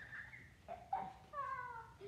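Two short high-pitched calls, the first just before a second in and the second a little longer around a second and a half, each falling slightly in pitch.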